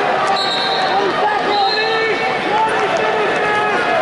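Crowd in a large arena yelling during a wrestling bout, many voices shouting at once with no one voice standing out.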